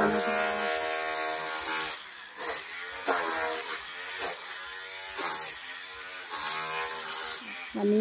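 Handheld electric angle grinder cutting ceramic floor tile: a steady whine for the first two seconds, then its pitch repeatedly sags and recovers as the disc bites into the tile.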